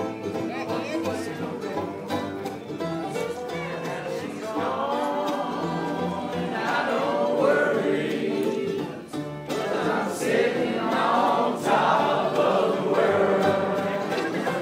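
Acoustic bluegrass band playing unamplified among a crowd: acoustic guitar, fiddle and upright bass, with several voices singing together. The singing comes in about four seconds in and grows fuller near the end.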